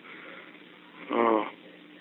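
A brief hummed vocal sound, like an 'mm', about a second in, heard over a telephone line with steady faint line hiss.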